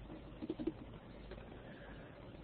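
Quiet room tone with a few faint, soft low sounds about half a second in.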